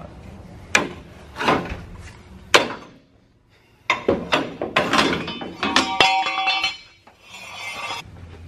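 Hammer blows on the steel front leaf-spring hanger of a truck frame. There are three separate strikes, then a quick run of blows that leave a metallic ringing.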